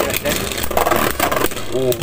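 Two Beyblade Burst spinning tops whirring on the plastic stadium floor, with rapid small clicks as their metal-and-plastic bodies scrape and knock against each other and the stadium.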